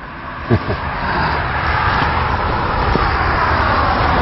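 Wind rushing across an open field of grass and flowers, a steady noise with a low rumble that builds gradually louder.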